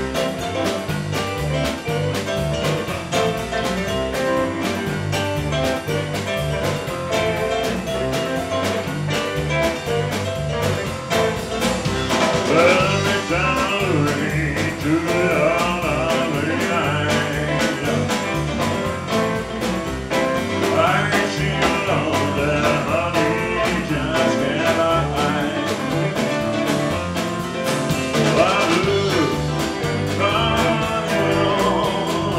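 Live band with electric guitar, bass guitar, drum kit and keyboard playing a mid-tempo rock song on a steady drum beat; a male lead vocal comes in about twelve seconds in.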